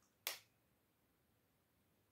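A single short, sharp click about a quarter second in, then near silence.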